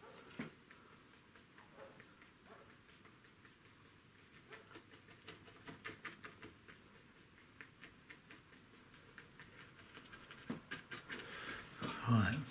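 Faint, scratchy strokes of a paintbrush working acrylic paint onto gesso-coated watercolour paper, a quick run of short strokes through the second half.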